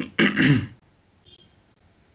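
A person clears their throat once, briefly, at the start, followed by quiet.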